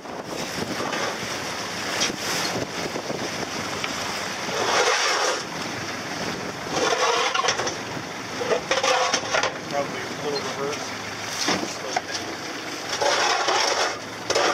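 Wind rushing over the microphone and the hum of a small boat's engine on open water, with indistinct crew voices in several short swells.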